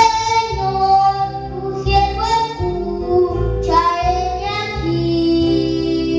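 A young boy singing a Spanish religious song into a microphone, holding long notes over instrumental accompaniment.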